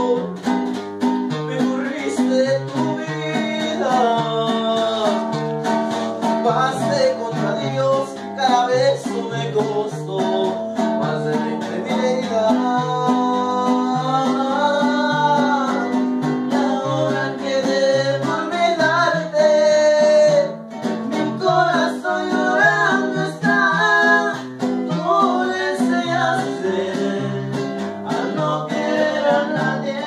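A trío huasteco playing live: strummed guitars keep a steady rhythm under a wavering violin melody.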